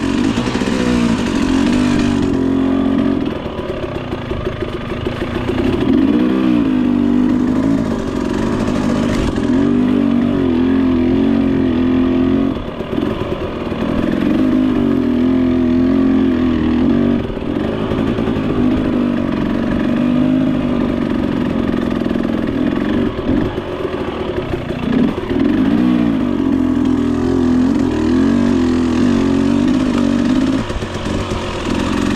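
A 300cc two-stroke dirt bike engine running at low to middling revs on slow, technical singletrack. Its pitch rises and falls continually with the throttle, with brief dips where the rider backs off and a few short knocks from the bike over rough ground.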